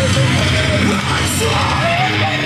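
Loud rock song with yelled vocals, a recorded track played over the hall's sound system for a lip-sync act.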